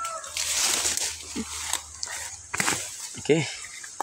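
Leaves, stems and vines rustling and snapping as a gourd is pulled free and handled, with a few short sharp clicks.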